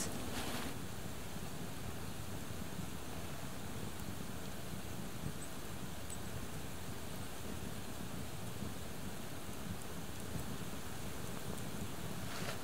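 Open flame of a burning pine-resin-soaked cloth torch, a steady hiss with a low flutter.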